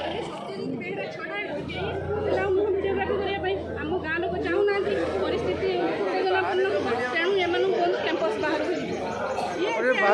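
Several people talking at once: overlapping, indistinct chatter of a small group of voices.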